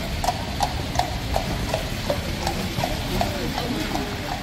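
Horse's hooves clip-clopping on wet cobblestones as a horse-drawn carriage passes, about three even strikes a second, over a steady hiss of rain and wind.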